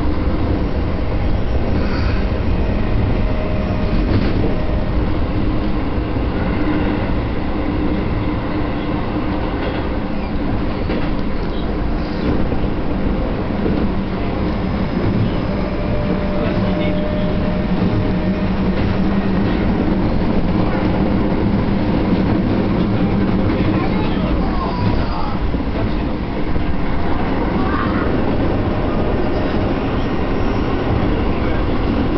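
Steady running noise of a train heard from inside the carriage while under way: the rumble of wheels on rails with a low hum that grows stronger midway.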